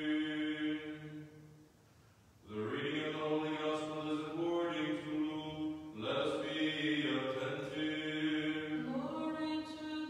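A man's solo voice chanting Orthodox liturgical chant, holding long sustained notes. It breaks off for about a second near the two-second mark, takes up a new phrase, and steps up in pitch near the end.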